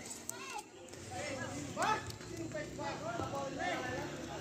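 Children's voices while they play: many short, faint calls and shouts that rise and fall in pitch, overlapping through the whole stretch.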